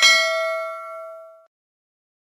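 Notification-bell ding sound effect, struck once as the bell icon is clicked and ringing out, fading away over about a second and a half.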